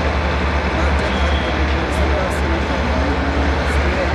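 A woman speaking over a steady low rumble and general background noise.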